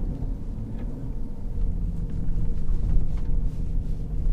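A Jeep Grand Cherokee Trackhawk's supercharged V8 and the road noise, heard from inside the cabin as a steady low drone and rumble.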